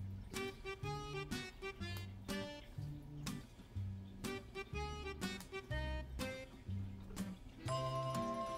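Background music: a run of plucked notes over a bass line.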